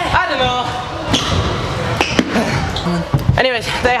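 A few sharp knocks of scooters hitting ramps and floor, echoing in a large indoor skatepark hall.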